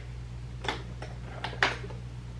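Three short, faint clicks, the last two close together near the end, over a steady low hum.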